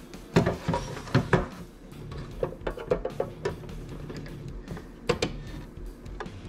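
Scattered plastic clicks and knocks as a chip adapter with its memcal is worked into the slot of a GM OBD1 engine computer's plastic case and seated until it locks, over a steady low background.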